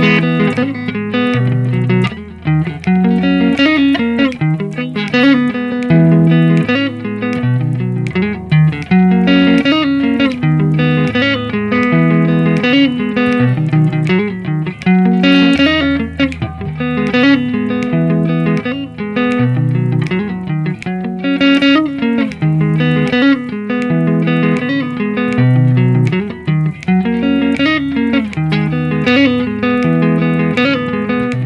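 Squier Stratocaster electric guitar played with a pick at tempo 80: a repeating pattern of single notes over a low bass line, the form coming round about every seven seconds.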